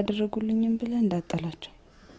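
A woman speaking Amharic in a calm, low voice. Her speech stops about one and a half seconds in.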